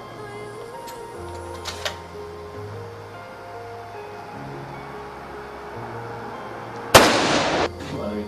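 Background music with low held notes that change every second or so. Two faint sharp cracks come about a second in and shortly after, and near the end one loud, sudden gunshot bang dies away in under a second.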